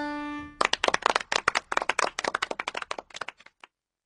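A short round of hand clapping, about three seconds of quick irregular claps that thin out and stop just before the end. A held musical note dies away in the first half-second.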